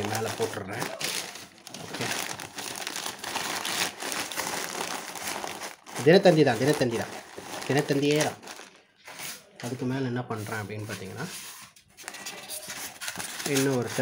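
Sheets of newspaper crumpled, crinkled and pressed into a cardboard box as padding, filling the gaps around the packed bags.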